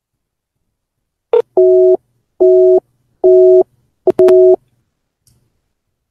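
Paltalk's call-failure busy tone: after a short blip a little over a second in, four two-tone beeps sound, each under half a second and a little under a second apart. The call cannot go through because the other user's older Paltalk version doesn't support audio calling.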